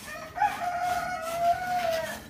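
A rooster crowing once: a single drawn-out call lasting about a second and a half, starting with a short rise and then held steady before breaking off.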